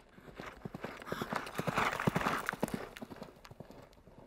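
Hoofbeats of several running horses, a rapid irregular clatter that grows louder to a peak around the middle and then fades away.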